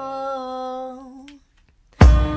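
The closing held vocal note of a sped-up song, one steady pitch that fades out about a second and a half in, followed by a brief silence.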